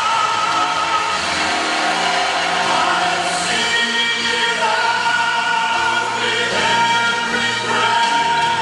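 Vocal group singing in harmony over instrumental backing, holding long notes.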